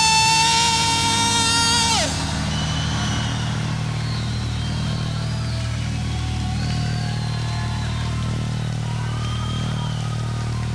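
A held electric-guitar feedback note at the end of a live rock song, rich in overtones, that slides down in pitch and cuts off about two seconds in. After it a low steady drone carries on, with faint wavering whistle-like tones over it.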